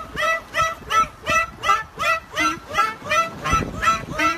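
Clarinet played in a quick run of short, repeated notes, about three a second, each note bending slightly in pitch.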